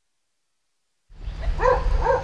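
Silence, then about a second in a dog starts barking: a quick run of short barks over a low outdoor rumble.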